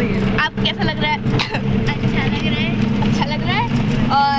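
Steady low drone of a bus engine and road noise heard inside the passenger cabin, with voices talking over it.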